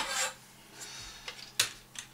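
A pair of spectacles being handled and measured by hand: a brief rubbing sound at the start, then mostly quiet with a few light clicks, the sharpest about one and a half seconds in.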